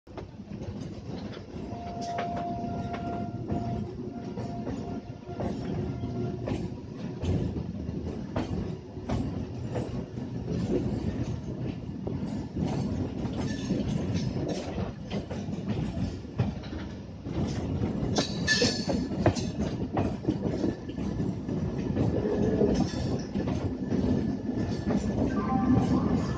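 Suburban electric local train (EMU) running on the track, heard from its open doorway: a steady rumble of wheels on rails with a run of quick clicks over the rail joints. A thin steady whine comes in for a few seconds after the start, and a higher faint squeal near the end.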